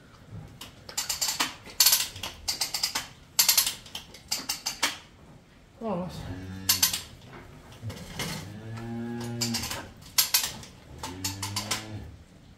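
Cow in labour bellowing three times as her calf is pulled: a falling call, then a long held one, then a shorter one. Before that come bursts of rapid metallic rattling and clicking.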